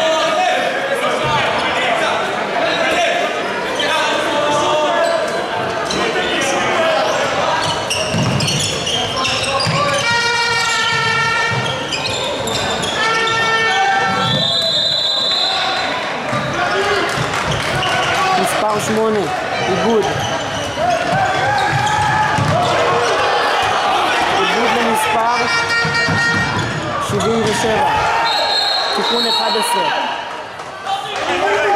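Handball match in a sports hall: the ball bouncing on the wooden court, players' shoes squeaking, and voices echoing through the hall. A high steady whistle sounds about fifteen seconds in and again near the end.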